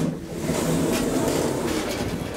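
Elevator car doors opening, letting in the steady noise of a busy public space, which starts suddenly about as the doors part.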